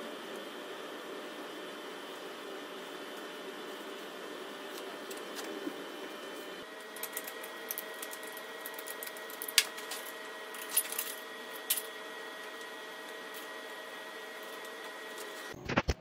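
A steady mechanical hum with a few faint tones, its pitch shifting about six and a half seconds in. A few light clicks and taps of hand tools being handled come in the middle, and a brief louder rattle comes just before the end.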